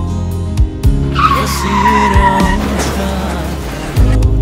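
Car tyres screeching under hard braking: a loud squeal starting about a second in, sinking slightly in pitch for about a second and a half before fading out. The song's music continues underneath.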